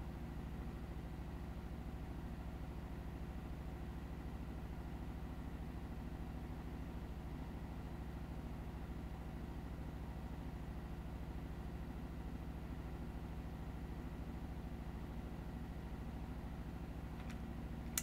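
A steady low electrical hum that does not change at all; no stitching bursts or other events are heard.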